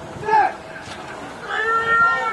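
High-pitched voices shouting on a rugby pitch as a scrum is set: a short shout about a third of a second in, then a long drawn-out call near the end.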